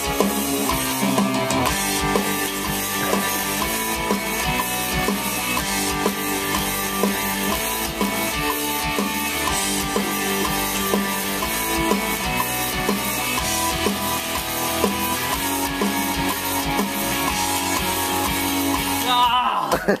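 Warwick electric bass played along to a pop-rock track with drums and guitar, a steady beat throughout; the music stops just before the end.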